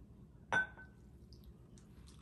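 A single light clink of ceramic tableware about half a second in, ringing briefly as a white ceramic pitcher is tipped against the rim of a bowl to pour milk onto cereal.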